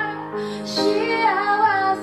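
A woman singing with her own piano accompaniment on a grand piano. Her voice dips briefly early on, then comes back in with a short hissy consonant and a new sung phrase over the held piano chords.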